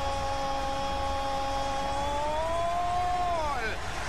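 A man's long drawn-out goal call, a single "gol" held for over three seconds. It rises slightly in pitch past the middle and falls off near the end.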